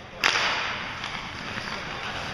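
A sharp crack of hockey sticks on the ice and puck about a quarter second in, followed by a steady scraping hiss of skates cutting across the ice.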